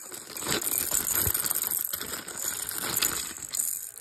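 Plastic packaging crinkling and crackling in irregular bursts as a baby's bead toy is unwrapped and pulled out.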